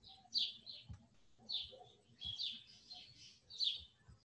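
A small bird chirping repeatedly, faint: short, high chirps that slide downward, some in quick pairs, spread across the few seconds.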